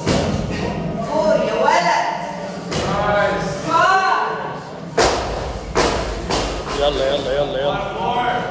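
Loaded barbell with rubber bumper plates hitting the rubber gym floor: a heavy thud about five seconds in, with lighter knocks of the bar and plates before and after it, in a large echoing room.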